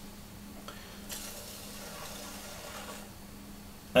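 Electric potter's wheel running with a steady low hum, while wet fingers rub softly on the wall of the spinning clay bowl, easing it outward.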